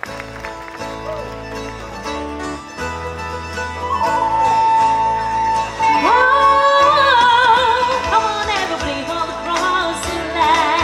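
Live folk-style stage music on acoustic guitar and fiddle with a bass line, joined about four seconds in by a woman singing into a microphone, her long held notes wavering with vibrato.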